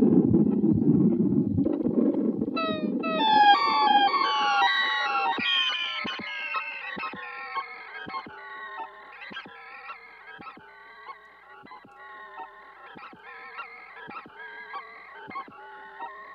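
Electric guitar through a Red Panda Raster 2 digital delay. A chord rings at first, then a cascade of short delay repeats that glide in pitch, chirping and warbling, fades away gradually, with faint ticks among the repeats.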